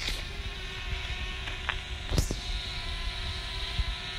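Quadcopter drone's propellers humming steadily overhead, with wind rumbling on the microphone and a brief knock about two seconds in.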